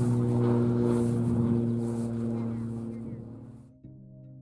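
Radio-controlled P-51 Mustang model's motor running steadily at taxi power, with wind gusting on the microphone, fading out near the end as music begins.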